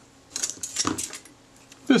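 A short cluster of light metallic clicks and clinks in the first second, from small metal camera parts and tools being handled.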